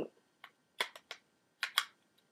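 Several small, sharp clicks and taps of a plastic Korres pressed-powder compact being handled and opened.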